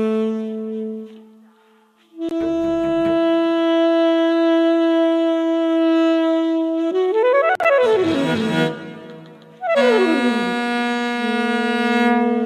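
Saxophone and cello improvisation: long held notes, with a brief drop almost to silence about two seconds in, then sliding pitch glides, one falling and one rising, around eight seconds in, and a falling glide into a held low note near the end.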